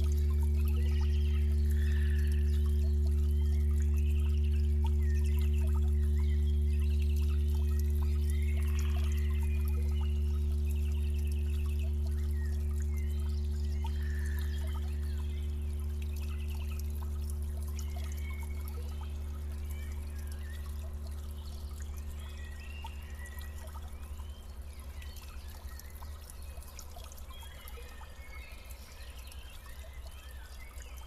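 Shallow stream trickling over stones while small birds chirp and sing. Under them runs a low steady hum of several held tones, which fades out gradually over the second half.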